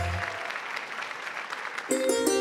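A studio audience applauding as the introductory music fades out. Just before the end, the orchestra comes in with held notes, opening the song.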